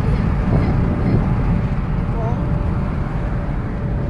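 Steady road and engine noise inside a moving car's cabin, mostly a low rumble, with a faint steady hum.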